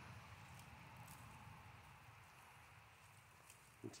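Near silence: a faint steady background hiss with a few very faint ticks.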